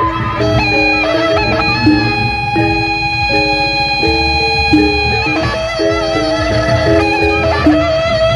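Sasak gendang beleq ensemble playing: bamboo flutes carry a quick melody of short stepping notes, holding one long high note for a few seconds in the middle, over large drums, small kettle gongs and cymbals.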